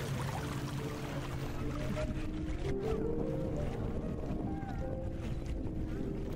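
A boat running steadily along the water, with a low constant rumble, while music plays over it: a tune of held notes.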